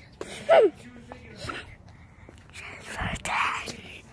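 A short laugh about half a second in, then a breathy whisper near the end.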